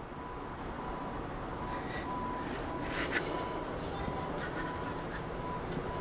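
Faint rubbing and handling noises as the power-supply circuit board of an LG 32LC7D LCD TV is moved and turned over on a cloth-covered table by hand, with a soft click about three seconds in, over a steady background hiss.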